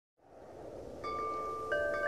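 Acoustic guitar (Maton M808) fading in with high, bell-like notes through Strymon Big Sky reverb over a soft hiss. One note enters about a second in and another just before the end, each ringing on.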